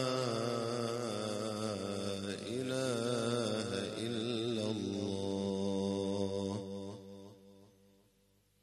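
A man's solo voice chanting in the melismatic Quranic recitation style, drawing out a long ornamented line with vibrato and a held note, then fading away near the end.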